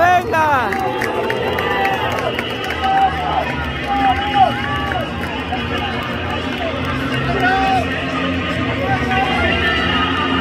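Scattered shouts and calls from players and a few onlookers, loudest in the first second, then shorter calls here and there over a steady low hum.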